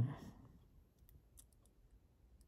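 A brief murmured 'un' in a man's voice at the very start, then faint, scattered short high clicks, four or five of them in the second half.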